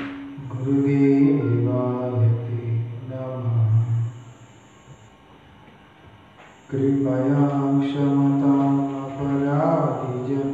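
A man chanting prayers in a low, steady voice, holding long notes. He breaks off for about two seconds in the middle, then resumes with another long held phrase.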